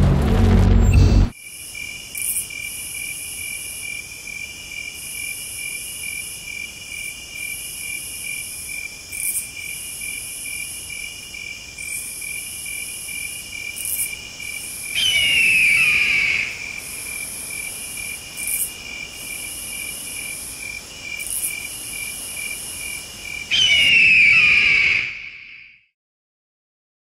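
Crickets chirping in a steady, rapid pulsing trill, with a faint high hiss above it. Twice, about fifteen seconds in and again near the end, a loud, descending scream of a bird of prey cuts over them.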